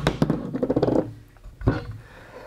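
Handling noise from a bare motorcycle engine block being turned over by hand on a wooden bench: rubbing and light knocks, then a single heavier thump near the end.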